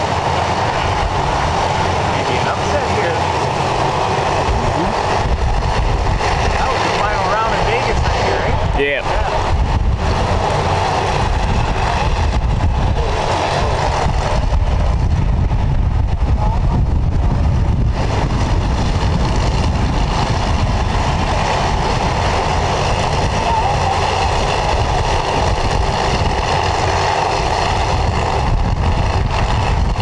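Supercharged drag-race engines idling loudly and steadily at the starting line; neither car launches.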